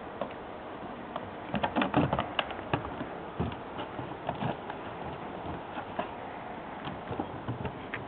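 Irregular clicks and knocks of an Old English Sheepdog's claws on wooden decking and of the wicker basket it carries bumping the boards, busiest from about one and a half to three seconds in.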